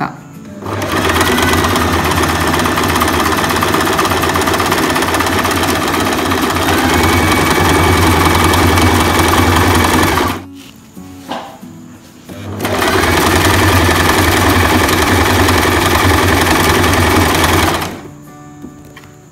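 Electric sewing machine stitching a zigzag overlock stitch along a cloth edge: one steady run of about ten seconds, a stop of about two seconds, then a second run of about five seconds.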